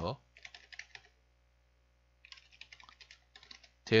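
Computer keyboard typing: a short run of quick keystrokes in the first second, then a longer run from about two seconds in.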